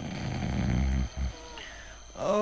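A man's low, rough snore lasting about a second, followed by a short snort as the sleeper is roused.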